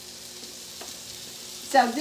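Chopped peppers sizzling in oil in a skillet, a steady frying hiss, with a couple of faint taps as more chopped vegetables are scraped in from a plate.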